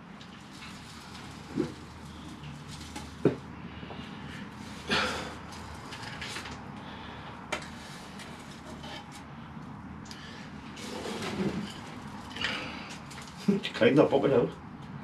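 Damp granular bonsai soil being scooped and tipped into a glazed pot around the tree's roots: a gritty rustle about five seconds in, with a few sharp clicks of the scoop.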